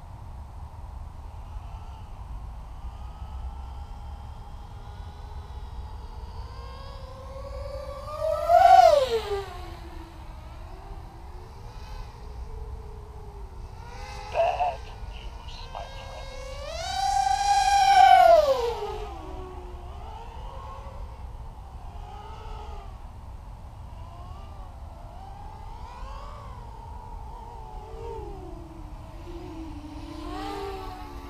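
The whine of a 6-inch FPV racing quadcopter's brushless motors and propellers on a 4S battery, rising and falling in pitch with the throttle. There are two loud throttle punches, about 8 seconds in and a longer one around 17 seconds, with a short blip between them.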